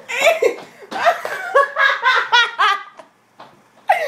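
A girl laughing in a run of bursts, with quick repeated ha-ha pulses around the middle, breaking off about three seconds in.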